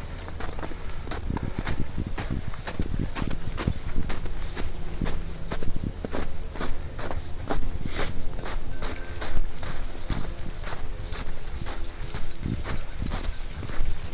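Footsteps in snow at a walking pace, a run of short crunches of uneven loudness.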